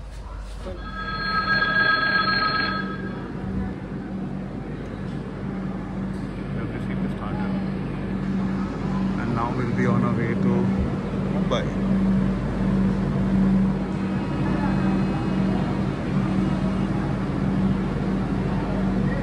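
Railway platform ambience beside a standing train: a steady low hum, a ringing electronic tone for about two seconds near the start, and people's voices in the background.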